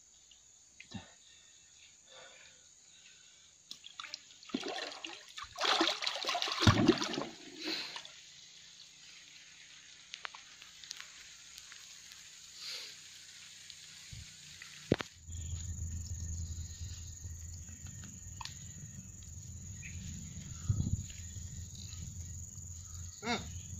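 Water splashing and sloshing in a shallow pool as a man moves in it while hand-fishing, in a few bursts about four to eight seconds in. From about fifteen seconds a steady low rumble takes over.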